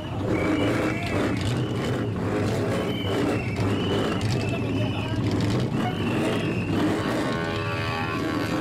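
A car engine idling with a steady low drone, under crowd voices and short high-pitched tones that come every second or so.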